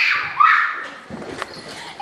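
A girl's frightened scream breaking off with a falling pitch at the start, then a shorter hoarse cry about half a second in, followed by quieter shuffling and a single click.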